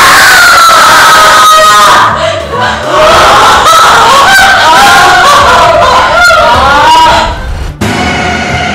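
A young woman screaming in terror: one long, falling scream, then several overlapping shrieks. The screams cut off suddenly near the end.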